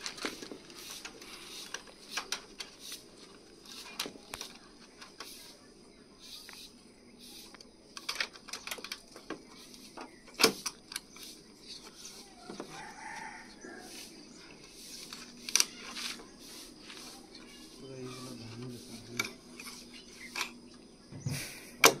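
Irregular, sharp taps and clicks of a hammer knocking the wire lashings tight around bamboo poles on a steel frame. The sharpest knock comes about ten seconds in.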